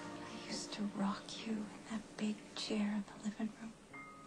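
A young woman sobbing in short, broken, breathy cries and gasps.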